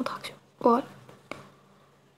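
Speech: a woman's voice in a few short, halting syllables over a faint steady hum, with one sharp click about two-thirds of the way through.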